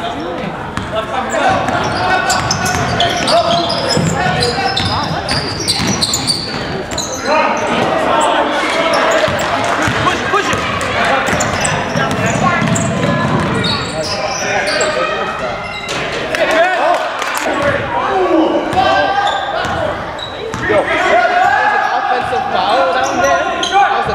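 Basketball game in a gymnasium: a ball bouncing on the hardwood floor, with players and onlookers calling out and talking, all echoing in the hall.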